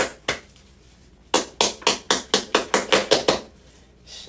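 A series of sharp taps or knocks on a hard surface: three at the start, then after a pause a quick run of about a dozen, roughly five a second.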